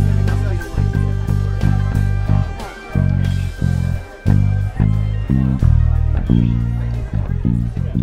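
Stenback five-string electric bass, played fingerstyle through a Trickfish Bullhead 1K amp, playing a syncopated line of short, separated notes along with the song's backing track.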